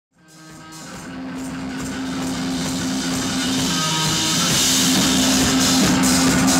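Rock music with guitar and drums, fading in from silence and growing steadily louder over the first few seconds.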